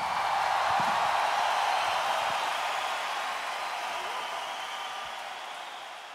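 Concert crowd applause and crowd noise after a song ends, fading out slowly.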